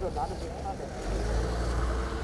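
Steady low engine rumble of a vehicle on the market street, swelling slightly about a second in, with faint voices in the background.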